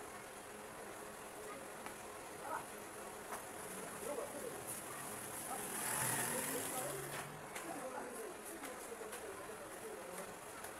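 Faint background room ambience with distant voices and a steady faint high-pitched hum, swelling briefly into a hiss about six seconds in.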